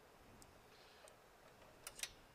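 Near silence with two faint clicks, a small one about half a second in and a louder one near the end, from a screwdriver and wires being handled in an open breaker panel.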